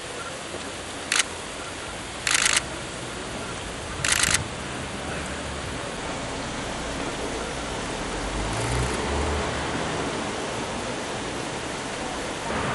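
Camera shutters clicking in three short bursts, about one, two and four seconds in, over steady outdoor background noise.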